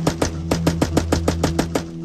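A fast string of sharp cracks, about nine a second, from a tripod-mounted spade-grip AR-15 fired from its paddles, stopping just before the end, over guitar background music.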